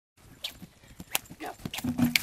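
A miniature horse's hooves on soft turf and dirt: a few faint, irregular thuds and knocks as it moves toward a jump, with a faint voice near the end.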